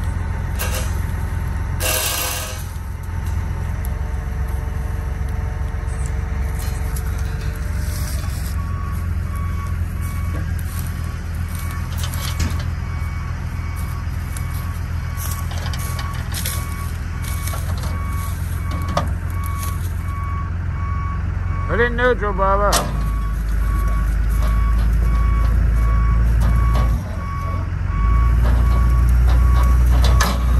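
A heavy machine's engine running steadily, with a clank of tow chain about two seconds in. From about eight seconds in a backup alarm beeps evenly and keeps on, a short warbling squeal comes a little past the middle, and the engine gets louder near the end.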